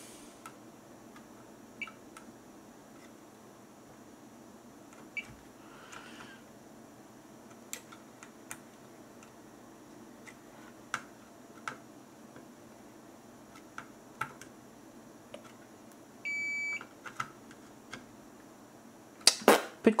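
A Fluke digital multimeter gives a single short beep, about half a second long, near the end, its continuity/diode-test tone when the probes meet a low-resistance path while a circuit board is checked for a short circuit. Light clicks throughout from the metal probe tips tapping solder points on the board.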